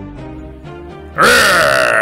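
Light background music, then about a second in a man's loud, drawn-out vocal sound that wavers in pitch.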